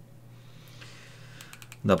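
A few faint clicks of keys or buttons being pressed, spread over about a second in a quiet room. A man's short spoken word cuts in near the end.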